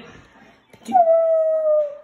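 A single howl: one loud held note that slides slightly down and lasts about a second, starting near the middle.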